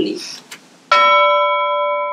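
A single bell-like chime struck about a second in, its several tones ringing on steadily and fading only slightly: an edited-in transition sound effect for a title card.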